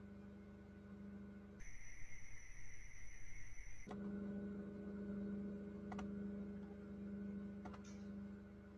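Low steady electrical hum with a few faint clicks. For about two seconds, starting under two seconds in, the hum drops out and a louder, unsteady hiss with high steady whines takes its place.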